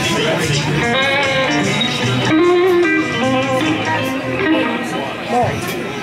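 Live band playing a funky tune: electric guitar lead lines with bent notes over bass guitar and drums.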